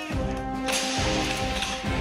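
Background music with sustained tones and a steady low beat; about two-thirds of a second in, a single sharp crack cuts through it and fades quickly.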